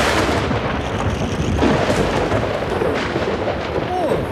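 Thunderstorm sound effect: a steady hiss of heavy rain with thunder rumbling.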